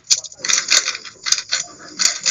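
Plastic speed cube clicking and clattering in quick, irregular succession as it is turned and handled.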